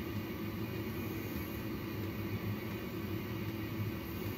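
Steady hum and hiss of neonatal intensive-care equipment, the incubator and the infant's CPAP breathing circuit running continuously, with a low hum underneath.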